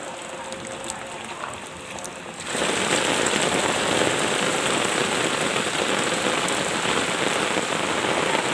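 Floodwater rushing. About two and a half seconds in, the sound jumps to a louder, steady hiss of heavy rain pouring down onto flooded ground.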